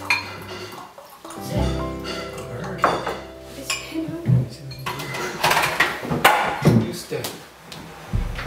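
Serving spoon and utensils clinking against ceramic plates and bowls as food is dished out, several clinks coming mostly between about five and seven seconds in, over steady background music.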